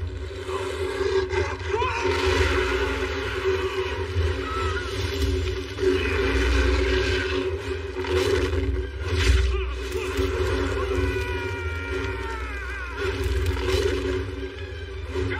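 Film action-scene soundtrack mix: music and effects with a werewolf roaring, gliding high cries, and a steady low rumble underneath.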